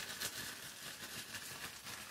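Faint crinkling and rustling of a small plastic zip bag full of paper slips, kneaded and shaken by hand to mix them.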